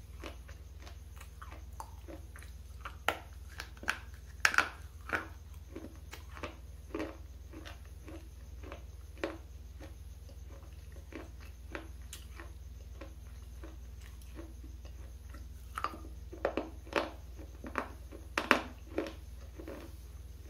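Close-up crunching and chewing of a hard, dry red-and-black bar, bitten and chewed right at a lapel microphone. Irregular sharp crunches, with louder bursts of bites about four seconds in and again near the end, and softer chewing in between.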